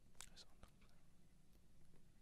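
Near silence: faint room tone with a few soft, short clicks in the first second and one more later.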